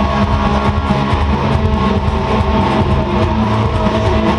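Distorted electric guitar, an Epiphone SG through a Boss DS-2 distortion pedal, strummed fast and loud, playing along with a rock band recording.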